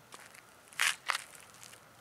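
Two crunching footsteps on dry ground, about a quarter second apart, a little under a second in.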